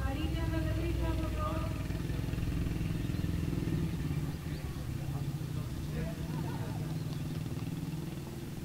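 A voice for the first two seconds, over a steady low drone that continues after the voice fades.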